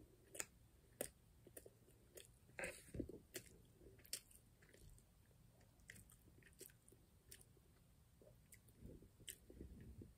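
Faint chewing of pizza crust: soft crunches and small mouth clicks every so often, a little louder about three seconds in.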